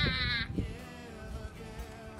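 A long, high, wavering bleat-like cry, falling slowly in pitch, cuts off about half a second in, followed by faint background music.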